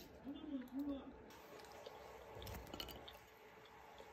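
A person hums two short notes, followed by faint scattered clicks and crinkles from handling a plastic food wrapper.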